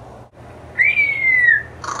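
An African grey parrot whistling one long, clear note of about a second, starting about three-quarters of a second in: it jumps up quickly and then slides slowly down in pitch.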